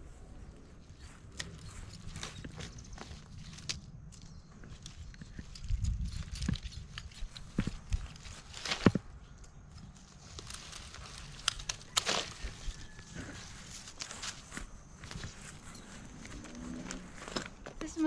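Coconut palm frond being split lengthwise with a knife: irregular sharp cracks and snaps as the midrib splits, the loudest a little before the middle, with the stiff leaflets rustling.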